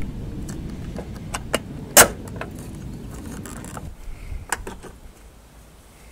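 Light clicks and knocks of a metal bracket being handled and fitted onto threaded studs, with one sharp click about two seconds in and a couple more later, over a low rumble that fades in the last two seconds.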